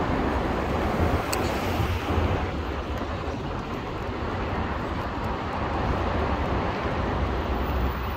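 Steady road traffic noise from passing cars, with a heavy low rumble and a brief click about a second in.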